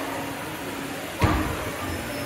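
Steady hum of a large, busy indoor hall, with a single sharp knock a little over a second in.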